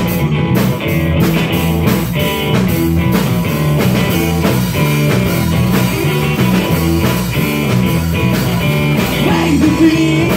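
Live rock band playing loud and steady: distorted electric guitar, bass guitar and a drum kit with a regular beat.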